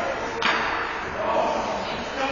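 Ice hockey play in a rink: one sharp crack about half a second in, typical of a stick or puck striking, over a steady wash of spectators' chatter.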